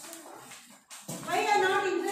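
A high-pitched voice speaking, starting about a second in, after a quieter stretch of classroom room noise.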